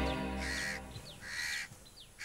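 A crow cawing, three short caws a little under a second apart, as background music fades out in the first moment.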